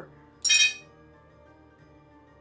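A single bright, glassy clink or chime sound effect about half a second in, ringing briefly, over soft background music. It marks the on-screen health bar dropping.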